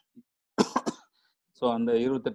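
A person coughs, a short burst of two or three quick hacks about half a second in, then speech resumes near the end.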